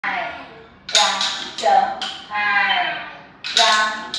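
Voices chanting a rhythm in a sing-song way, one held syllable after another, with sharp clicks of wooden rhythm sticks tapped together on some of the beats.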